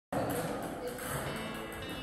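Soft background music.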